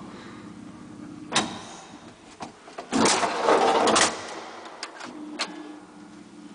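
Collapsible steel scissor gate of an old Flohrs traction elevator car being slid shut: a loud metal rattle lasting about a second midway, followed by a couple of sharp clicks as it latches. An earlier single click and a low steady hum lie under it.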